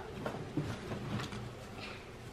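Faint scattered clicks and light rustles as potato chips are picked up off small plates and brought to the mouth.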